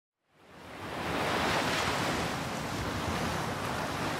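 A steady rushing noise, fading in from silence over the first second and then holding.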